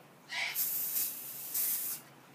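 Aerosol can of silver colour hairspray spraying onto hair: a long hiss that starts about half a second in, eases a little in the middle and is strongest near the end.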